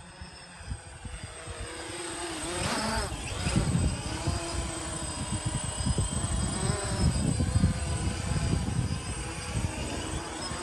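Small quadcopter's four propellers and brushless motors buzzing, growing louder over the first few seconds as it comes closer, its pitch wavering as the flight controller adjusts the motors. Gusts of wind rumble on the microphone.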